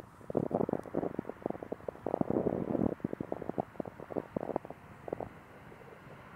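Wind buffeting the phone's microphone in irregular rumbling gusts, dying down about five seconds in to a faint steady hiss.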